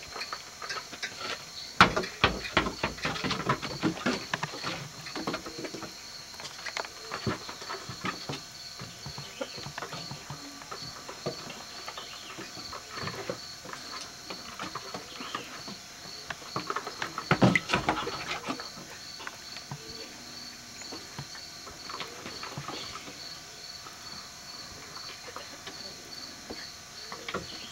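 Raccoons scuffling with a basketball on a wooden porch deck: claws scrabbling and the ball knocking against the boards. The knocks come in busy flurries about two seconds in and again near eighteen seconds, with a faint steady high chirping of insects behind.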